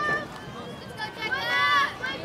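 High-pitched voices calling out, with one louder, drawn-out call near the end.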